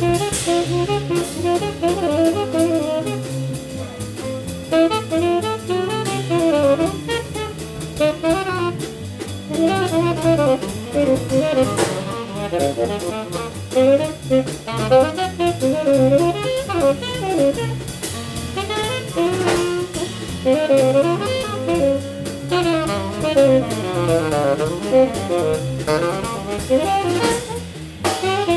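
Live jazz quartet: two tenor saxophones play lines together over double bass and drum kit, with a swing feel and steady cymbal strokes.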